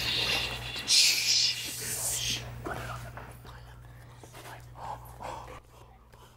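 Players stifling laughter: breathy hissing laughs and whispers behind covered mouths, loudest in the first two seconds and then fading to faint breaths, over a low steady hum.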